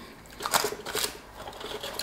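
Crispy fried chicken being handled and shifted on a metal wire rack: a scatter of light crackles and clicks, thickest around half a second to a second in.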